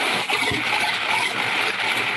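A container of about 200 numbered raffle balls being shaken, the balls clattering together in a continuous, noisy rattle.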